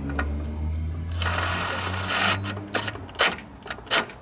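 Hand ratchet clicking as a sensor is tightened in a car's engine bay, with a rasping run of clicks in the middle and a few separate sharp clicks near the end, under a low steady hum.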